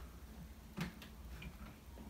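A single short plastic click about a second in, then a fainter tick, over quiet room tone: a vacuum's floor nozzle being fitted onto its extension tube.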